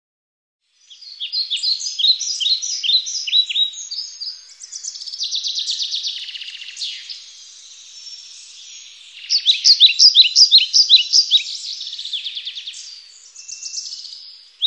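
Small birds chirping and trilling, beginning about a second in: runs of short, quick, high chirps, with a fast trill in the middle and the loudest runs near the end.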